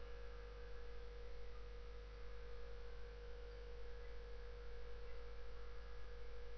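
Faint, steady electrical mains hum with a thin, steady higher tone over it.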